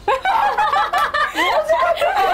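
Several women laughing together, with voices overlapping in chuckles and snickers.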